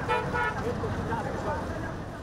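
Outdoor background noise with people talking indistinctly, and a brief steady tone near the start.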